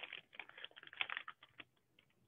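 Folded origami paper being handled: a quick run of small, irregular crackles and rustles that stops about a second and a half in.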